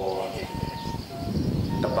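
A person's voice talking, trailing off early and resuming near the end, over a steady high drone of forest insects.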